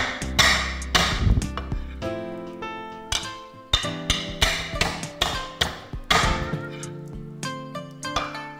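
A cleaver smacking peeled shrimp against a wooden chopping block, flattening them for dumpling filling: bursts of quick, irregular thuds over background music.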